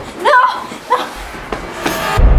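A young girl's short, high-pitched wordless cries. A low rumble comes in after about a second, and a single sharp slam sounds near the end.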